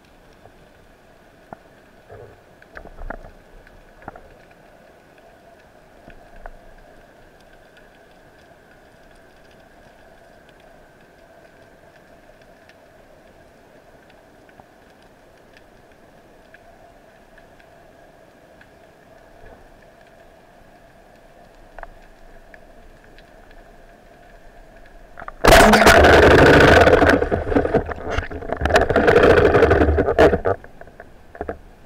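Faint, steady hum of a distant boat engine heard underwater, with a few small clicks. Near the end, a loud rush of water noise starts and runs on, with a short break: water and bubbles rushing past the camera as the diver moves up toward the surface.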